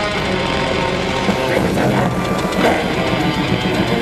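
A symphonic black metal band playing loud live music, with electric guitars over drums.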